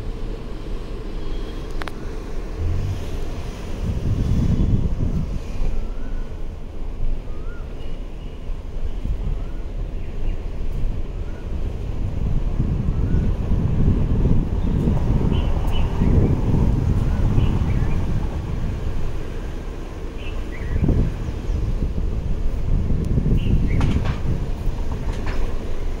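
Wind buffeting a phone's microphone: a low, uneven rumble that swells in gusts a few seconds in, through the middle and again near the end.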